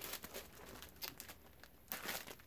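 Faint crinkling of a plastic bag wrapped around skeins of yarn as it is handled, a few soft crackles scattered through.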